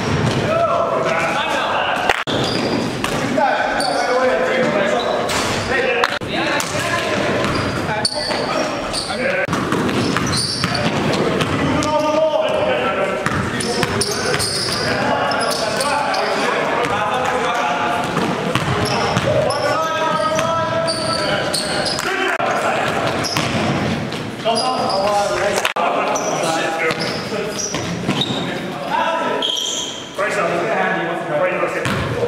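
A basketball bouncing on a hardwood gym floor in live play, with sharp impacts now and then, over players' indistinct voices in a large gym.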